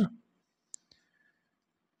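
Near silence with a short, faint click about three quarters of a second in and a fainter one just after: a pen tip touching the paper while writing.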